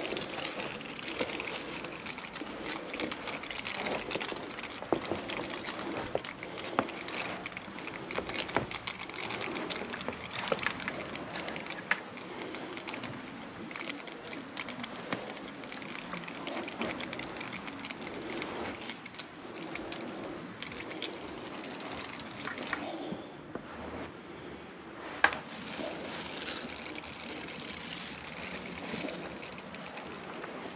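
Handheld sprayer hissing as it mists pet enzyme stain treatment onto carpet, with small crackling clicks throughout. The spray stops for about two seconds a little past the middle, then starts again after a sharp click.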